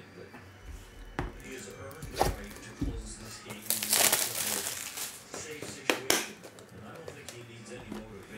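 Plastic crinkling as trading cards are unwrapped and handled on a desk, loudest in a burst about four seconds in, with several sharp taps of cards and packaging.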